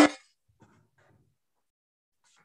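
A cooking pot being handled: one brief clang at the very start, then near quiet.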